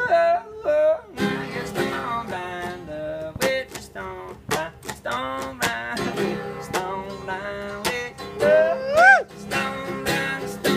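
Live one-man-band music: a guitar played with bending, gliding notes, wordless vocal lines and steady percussive thumps. About nine seconds in, a loud note swoops up and back down.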